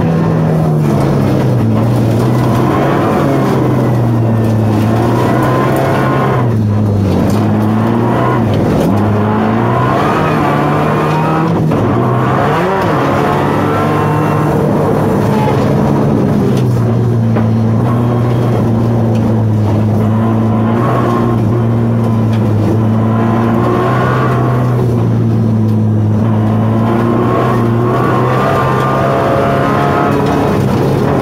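Subaru Impreza WRX STi's turbocharged flat-four boxer engine heard from inside the cabin, driven hard at speed on a snowy rally stage. The engine note dips and climbs back several times in the first half, then holds a steady high note for the rest.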